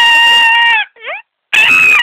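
A person screaming in a high, held, loud voice for nearly a second, then a short rising cry, then a second high scream near the end.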